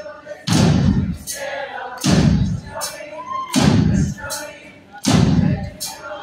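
Live rock band's drums beating out a slow, heavy pattern: four deep drum hits, each with a cymbal crash ringing on, about a second and a half apart, with a lighter cymbal tap between each, over crowd voices in a large hall.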